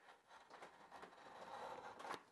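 Homemade beech chamfer plane, its blade set just barely through the V-shaped sole, taking a fine shaving off the sharp corner of a board: a faint, steady hiss of the blade cutting wood that grows slightly louder toward the end.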